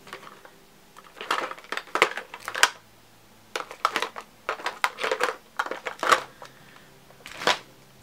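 Small plastic makeup containers clicking and clattering as they are handled and rummaged through: irregular clusters of sharp knocks with short pauses between.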